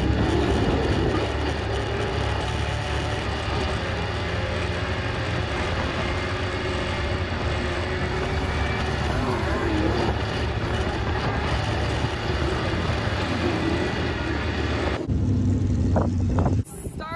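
Dirt-track sport modified race car's V8 engine, heard from inside the cockpit, running steadily at speed around the oval. About a second before the end it cuts to a different, lower engine sound.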